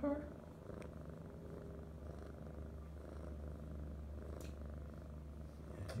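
Siamese kitten purring steadily.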